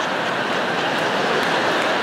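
Large theatre audience laughing and clapping after a punchline: a steady wash of crowd noise.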